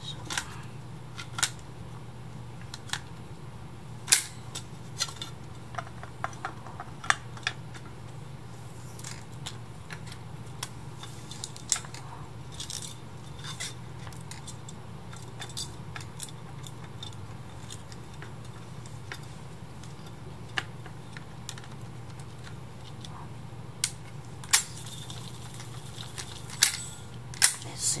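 Clear plastic tape reels being handled and pushed onto the metal spindles of a Sanyo MR-929-type reel-to-reel deck, giving scattered sharp clicks and knocks of plastic on metal. A steady low hum runs underneath.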